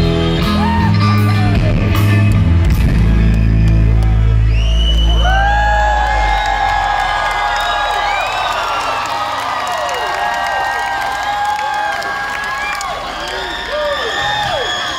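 A rock band playing live over a PA, with heavy bass and drums. The music ends about five or six seconds in, and a large crowd cheers and whoops for the rest of the time.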